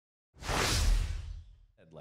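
A whoosh transition sound effect with a deep rumble under it, coming in sharply about a third of a second in and fading away over about a second.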